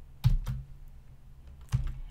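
Three keystrokes on a computer keyboard, two close together near the start and one more near the end, over a low steady hum.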